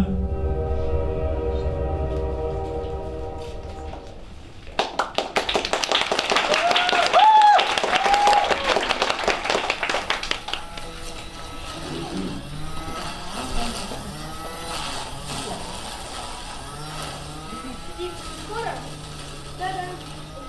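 The closing held chord of a song fades over the first few seconds. About five seconds in, audience applause breaks out for roughly five seconds, with a couple of rising-and-falling calls in the middle. After that it is quieter, with soft voices.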